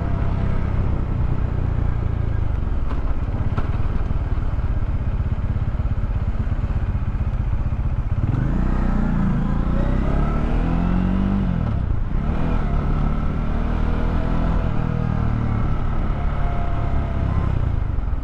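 Bajaj Dominar 400 single-cylinder engine running at road speed, with wind noise on the microphone. About eight seconds in the engine note climbs for a few seconds, dips at about twelve seconds, then runs steadier.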